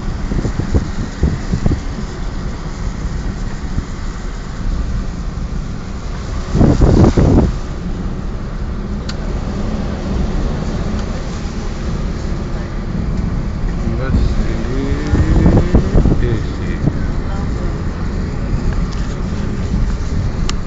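A car driving, with a steady low rumble of engine and road noise and a louder rushing surge about seven seconds in.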